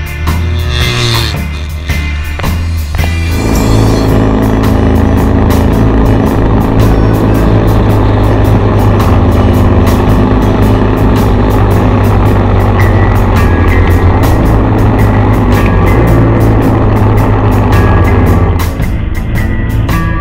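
1979 Kawasaki KZ750 parallel-twin motorcycle engine running on the road, its pitch shifting over the first few seconds and then holding steady at cruising speed. Music plays over it.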